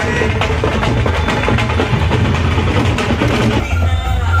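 Loud drum-led music with dense, rapid drum strokes. Near the end it gives way to a different piece with steadier tones.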